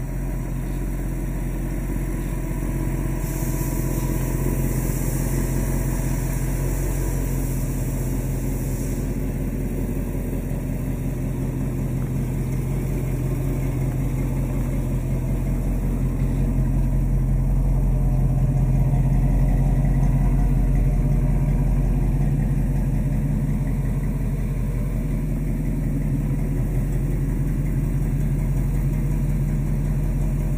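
Ford Pinto engine idling steadily, swelling slightly about two-thirds of the way through. About three seconds in, a hiss comes in for some six seconds.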